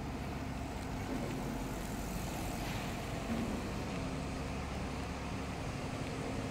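Steady outdoor street noise: a low rumble of road traffic, with a slight swell in hiss about two to three seconds in.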